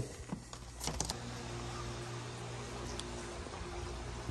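A few light clicks and knocks in the first second or so, then a steady outdoor hiss with a faint hum on a screened pool patio.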